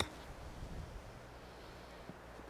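A golf iron striking a ball off the grass on a short chip shot: one sharp click.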